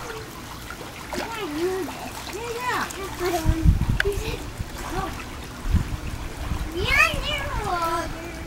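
A child swimming and kicking in a pool, making splashing water sounds, with short high-pitched children's calls in between and a couple of dull low thumps about halfway through and near six seconds.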